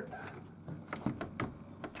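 Storm door's metal lever handle and latch being worked, a few sharp clicks and rattles, with the door not opening because it is locked.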